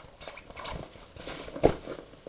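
Handling noise of a fabric cosmetics pouch: rustling and light knocks, with one louder knock about one and a half seconds in.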